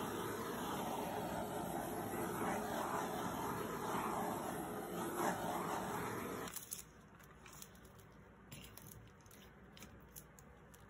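A small handheld torch's flame hissing steadily as it is passed over wet acrylic paint, cutting off about six and a half seconds in; a few faint clicks follow.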